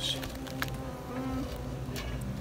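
A steady low buzzing hum made of several fixed pitches, with a faint click about half a second in.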